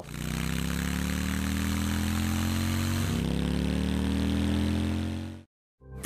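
Harley-Davidson Fat Boy's Milwaukee-Eight 114 V-twin running under way, its note rising steadily as it accelerates, easing briefly about three seconds in, then climbing again. It fades out quickly near the end.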